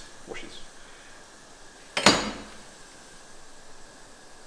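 A single sharp knock about two seconds in, ringing briefly, over faint room noise, with the tail of a short voice sound right at the start.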